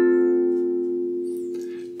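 An F major chord strummed once on a ukulele, left to ring and slowly dying away.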